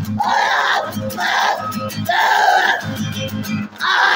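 Strummed acoustic guitar with a man loudly shout-singing over it in short, rough vocal phrases. The loudness dips briefly near the end.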